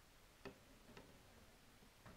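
Near silence: room tone with two faint, short clicks about half a second apart near the middle.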